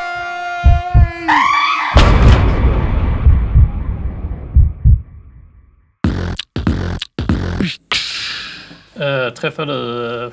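Two people screaming together, the scream falling away, then a loud crash about two seconds in whose noise dies away over a few seconds, as of a heavy stone statue hitting the ground. After a moment of silence come a string of short, hard rhythmic stabs and then a voice near the end.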